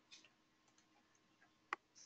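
Near silence, broken by one short, faint click about three-quarters of the way in: a computer mouse click that sets a web page loading.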